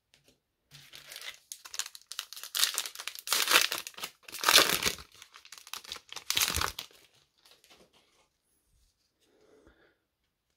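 Foil wrapper of a Panini Score 2021 football card pack being torn open and crinkled by hand: a run of rustles that is loudest about four and a half seconds in and stops about seven seconds in.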